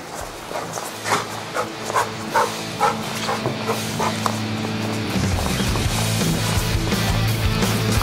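A dog barking in short, quick barks, about two a second, through the first half, over background music; a steady low drone in the music takes over from about five seconds in.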